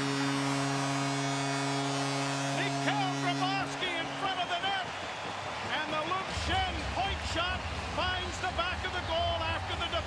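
Arena goal horn sounding a steady, multi-tone chord for about four seconds over a cheering home crowd, marking a goal. The crowd keeps cheering after the horn stops.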